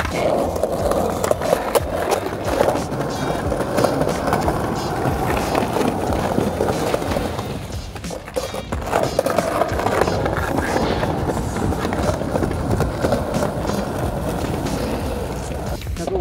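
Skateboard wheels rolling over tiled pavement, a steady rough rumble that eases briefly about halfway through.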